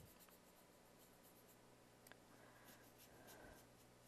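Near silence: the faint scrubbing of a paintbrush working purple acrylic paint into a gesso canvas board, over a low steady electrical hum.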